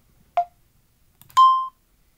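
A short electronic blip, then about a second later a steady electronic beep lasting about a third of a second.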